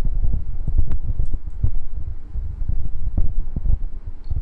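Handling noise on a phone's microphone as the phone is held, moved and its screen touched: an uneven low rumble with a few faint taps.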